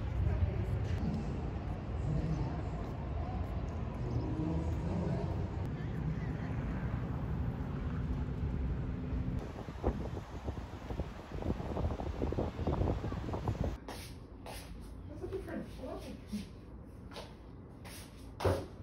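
City street traffic: a steady rumble of engines, with a coach bus in the street. About fourteen seconds in it cuts to quieter indoor handling sounds, with rustling and light knocks.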